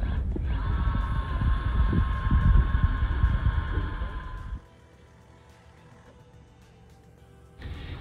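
Cordless drill with a long auger bit boring through a timber piling and whaler: a steady motor whine over irregular low rumbling, cutting off suddenly about four and a half seconds in.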